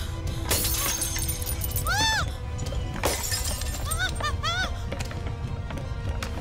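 Film soundtrack of an earthquake scene: a steady low rumble under dramatic music with swooping rising-and-falling tones, broken by two crashes of shattering objects, one about half a second in and a louder one about three seconds in.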